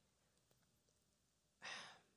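Near silence, then near the end a single short sigh, a woman breathing out.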